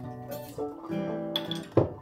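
Acoustic guitar with other plucked strings softly sounding a few chords, with one louder strummed chord near the end, as an old-time folk tune gets going.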